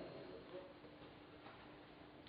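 Near silence: faint room hiss with a faint steady hum, and two soft ticks about a second apart.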